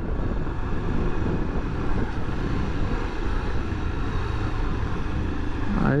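Honda XRE300 single-cylinder motorcycle engine running steadily at low road speed in traffic, mixed with steady wind rush on the microphone.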